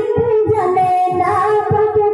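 A young female singer performing a Bengali gazal through a microphone and PA, holding long, wavering notes. A low rhythmic beat runs underneath.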